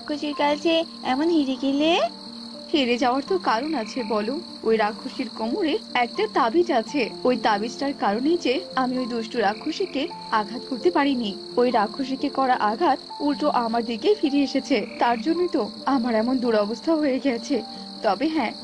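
Frogs croaking in many quick, overlapping calls over a steady high insect trill, as an ambience sound effect.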